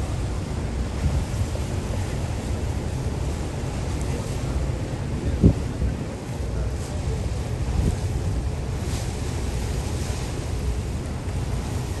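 Wind buffeting the microphone on a moving lake ferry, over a low rumble of the boat and water rushing past, with one short knock about five and a half seconds in.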